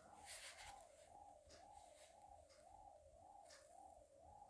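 Faint whooshing hum of an exercise bike being pedalled, a steady tone that rises and falls in pitch about twice a second.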